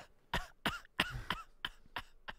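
A person's short breathy vocal bursts, about six in quick succession, each brief and separate.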